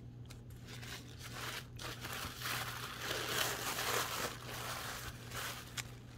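Thin sewing-pattern tissue paper crinkling and rustling as a wrapped parcel is unfolded by hand, growing louder after about two seconds.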